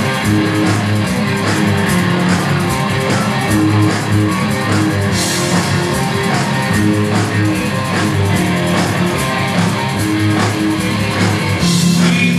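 Live rock band playing loud and steady: electric guitars over a drum kit, with a cymbal crash about five seconds in.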